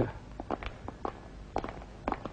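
Footsteps: a string of light, irregularly spaced steps.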